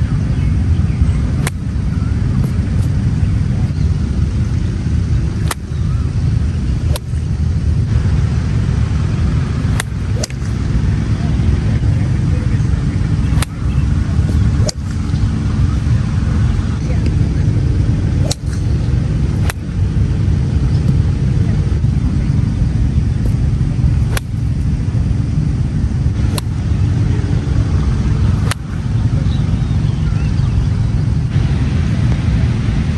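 Golf wedge shots off range turf: about a dozen sharp clicks of clubface striking ball, spaced a few seconds apart, over a steady low rumble.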